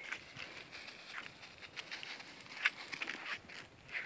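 Faint, irregular footsteps: a few crisp crunching steps, the clearest about two and a half seconds in.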